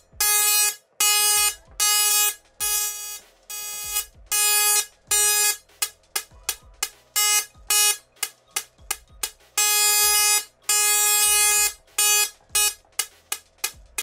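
Dual-pole music Tesla coil's spark arc buzzing at one steady pitch, switched on and off in bursts. There are several longer tones of half a second to a second, and runs of quick, short pulses around the middle and again near the end.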